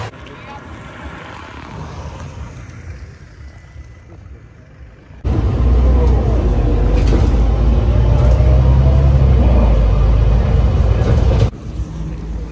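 Quiet street noise for about five seconds, then an abrupt cut to the inside of a moving SOR city bus: a loud, steady low rumble of engine and road noise that cuts off suddenly shortly before the end.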